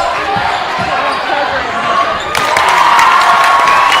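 Basketball game in a gym: a basketball dribbled on the hardwood court over the chatter and shouts of the crowd. The crowd grows louder a little over two seconds in.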